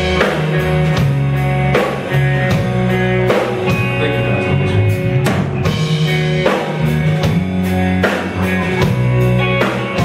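Live rock band playing loudly at the start of a song: a drum kit struck in a steady beat under electric guitar and bass.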